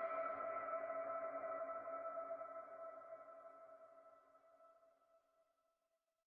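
The closing sustained synth chord of an electronic dubstep track, a steady ringing tone that fades out slowly and is gone shortly before the end.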